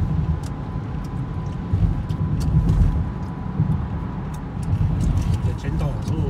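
Car cabin road noise at highway speed: a steady low rumble of tyres and engine, with a faint steady high tone and scattered light clicks.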